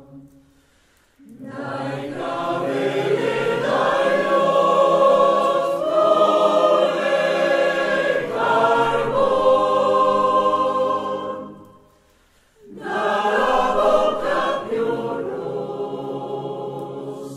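Mixed choir of men's and women's voices singing in parts: one long phrase that swells and falls, a brief pause about twelve seconds in, then the next phrase begins.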